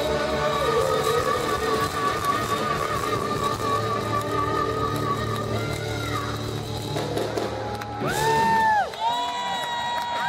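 Live rock band playing: a long held note wavering in pitch over a steady bass, falling away about six seconds in, then fresh sustained notes near the end, with the crowd cheering.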